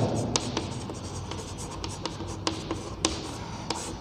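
Chalk writing on a chalkboard: a run of short, irregular scratches and taps as letters are written.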